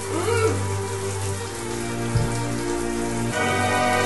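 A dark film score of sustained low drones and held tones runs under a steady hiss of running water. A few sliding pitch sweeps come at the start, a low thud comes a little past halfway, and the music moves to a new chord near the end.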